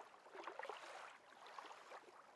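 Faint water sound of gentle lapping, with small uneven splashes.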